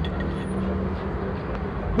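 Street traffic: a motor vehicle's engine running with a steady low hum.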